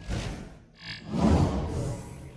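Animated end-card sound effects. A sudden whoosh with a brief chirp comes first, then a louder, low rumbling swell about a second in.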